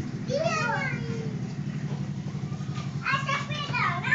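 Children's voices, a short high-pitched utterance about half a second in and a burst of chatter near the end, over a steady low mechanical hum.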